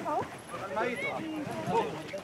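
Indistinct voices of people calling out to one another, with no clear words.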